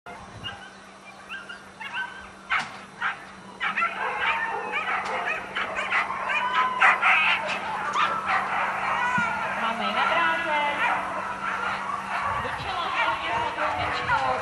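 Greyhounds yelping and barking excitedly, a few calls at first, then an almost unbroken chorus of high yelps from about three and a half seconds in.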